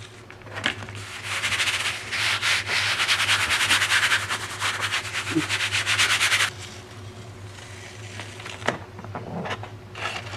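Brisk hand rubbing on the back of a sheet of printmaking paper laid over a gel printing plate, burnishing it to pull the print. A fast, dense rubbing starts about a second in and cuts off suddenly a little past the middle.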